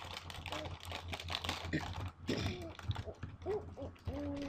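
Computer keyboard typing: a quick, irregular run of keystroke clicks as an email address is typed.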